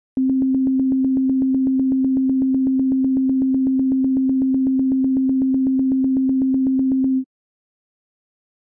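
Csound software synthesizer instrument playing one plain synthetic tone, retriggered on every sixteenth note by a live-coded loop. The notes run together into a single steady pitch with a light click about eight times a second, and the sound cuts off suddenly a little before the end.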